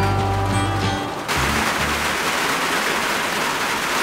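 Background music that stops about a second in, followed by steady rain falling on a van, heard from inside it.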